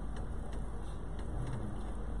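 Steady low background hum and hiss of room noise, with a few faint ticks, in a pause between speech.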